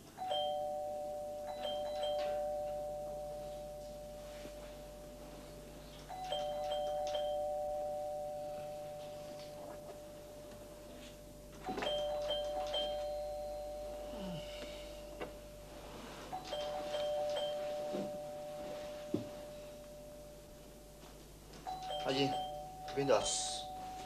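Two-tone ding-dong doorbell chime ringing five times, about once every five seconds, each ring a higher note then a lower one that fades slowly. Near the end there are louder knocks and rustles of movement.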